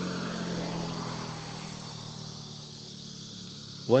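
A low, steady hum of a few held tones that slowly fades.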